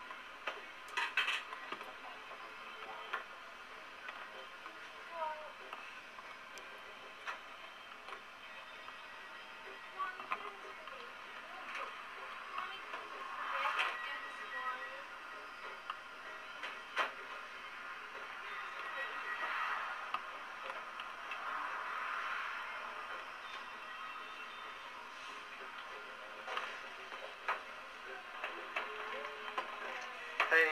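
Small-shop kitchen ambience: indistinct background voices and faint radio music over a steady hum, with scattered sharp clicks and knocks from work at the counter.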